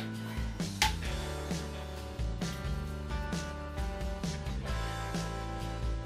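Background music with guitar.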